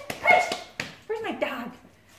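A dog vocalizing twice: a short call near the start and a longer, arching call about a second in.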